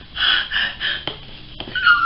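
A woman's excited, breathy squeals: three quick bursts, then a high squeaky rising-and-falling squeal near the end.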